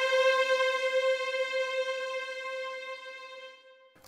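Sampled legato string section from Audio Imperia's AREIA strings library playing alone: one high note held and fading away to silence near the end as its modulation (CC1) dynamics curve is drawn down.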